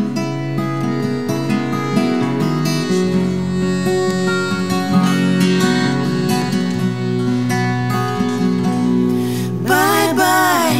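Live acoustic folk music: two acoustic guitars strummed under sustained piano-accordion chords in an instrumental introduction. Women's voices begin singing near the end.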